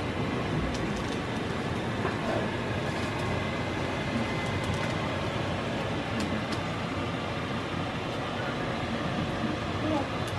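A steady rushing noise runs throughout, with a few faint, light clicks over it.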